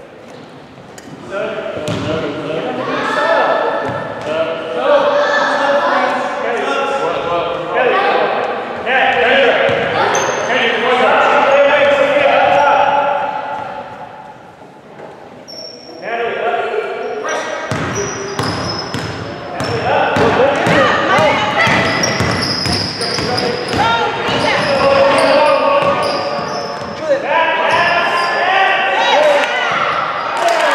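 A basketball bouncing on a hardwood gym floor during play, with players' voices calling out across the court, in the echo of a large gym.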